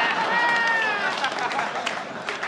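Comedy-club audience laughing at a punchline, with one voice laughing above the rest in the first second. Scattered clapping starts near the end.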